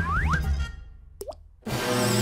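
Cartoon soundtrack: music with two quick rising-pitch plop sound effects at the start. It drops away to a brief lull with a short rising zip about halfway through, then comes back loudly near the end.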